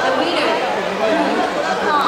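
Many people talking at once: steady chatter of overlapping voices, with no single speaker standing out.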